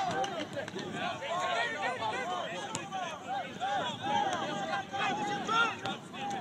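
Many overlapping voices of players and onlookers at a soccer match shouting and calling out across the field, none of it clearly made out.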